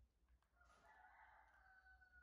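A rooster crowing faintly: one long drawn-out call starting about half a second in and falling slightly at its end.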